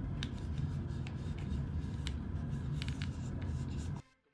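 Scratchy rubbing and scraping of fingers and a cloth working around the bare rim of a headphone ear cup, the old ear pad removed, with a steady low hum underneath.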